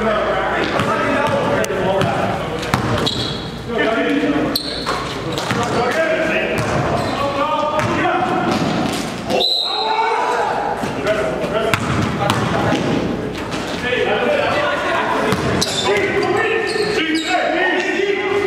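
Game sound on a basketball court: players' voices calling out over a basketball bouncing on the gym floor, in a large, reverberant gym. The sound drops out briefly about halfway through.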